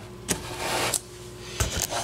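Handling noises: a click, then a scraping rustle lasting about half a second, then a couple of sharp knocks near the end.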